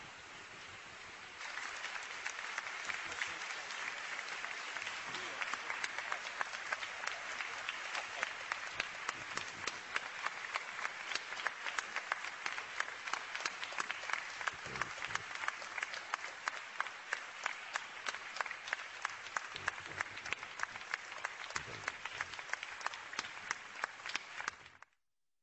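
Large audience applauding in a hall: dense, steady clapping that swells about a second and a half in and holds, with single nearby claps standing out.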